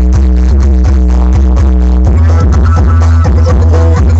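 Electronic dance music played very loud through a large outdoor sound system, with a heavy sustained bass line under a steady beat. The bass line moves up to a higher note about two seconds in.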